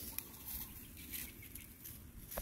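Faint, scattered crackling and rustling of dry fallen leaves as a mother macaque and her baby shift about on the leaf litter.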